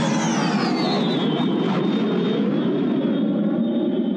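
A jet-like flyby sound effect: a loud, dense rush with a high whine that falls in pitch over the first second and a half, then holds steady, as if an aircraft is passing.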